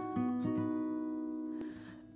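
Acoustic guitar chords strummed and left ringing in a pause between the sung lines of a Turkish song, fading away near the end.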